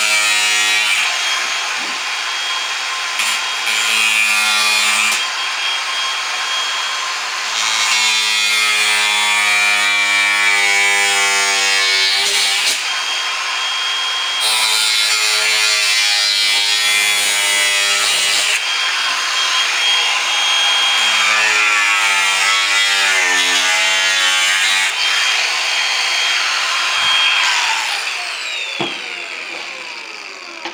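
Angle grinder with a thin cutting disc cutting notches into an aluminum composite panel, a steady grinding whine whose pitch sags and recovers as the disc bites in several passes. Near the end the motor winds down.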